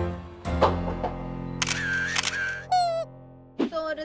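Background music with a camera shutter click sound effect about half a second in, followed by comic sound effects, one of which slides steeply down in pitch near the end.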